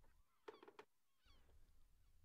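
Near silence with a few faint, short bird calls about half a second in.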